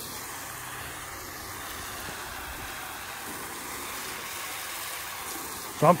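Garden-hose foam cannon spraying a steady stream of soapy water onto the side panels of a pickup truck, heard as a continuous, even spray.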